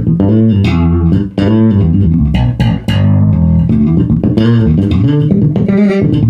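Active-pickup Jazz-style electric bass slapped and dug into hard, a continuous run of low notes with sharp popping attacks, through a Bergantino Forte head and HDN410 4x10 cabinet. The head's variable-ratio compressor takes the sharpest transient off the top and fills out the low end.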